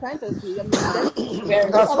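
People talking over a group video call, with a short cough about three-quarters of a second in.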